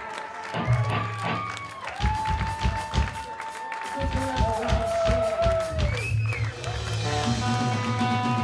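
Punk band playing live on stage: electric guitar notes held out over bass and drums, the beat kicking in about half a second in.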